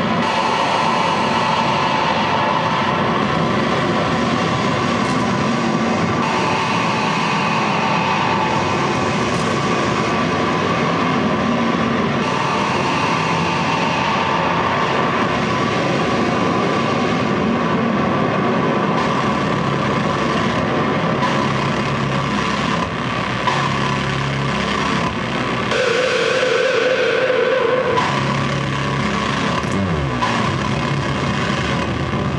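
Live harsh noise electronics through a PA: a loud, continuous wall of distorted noise with droning tones. In the last few seconds, short low tones repeat underneath it.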